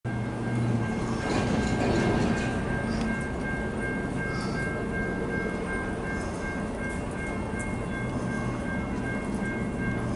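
Approaching CSX freight train, an empty rock train, heard as a steady low rumble that is strongest in the first few seconds. Over it runs a high two-note ringing, pulsing evenly a few times a second.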